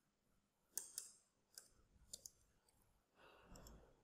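Near silence broken by about five faint, scattered clicks from a computer mouse and keyboard.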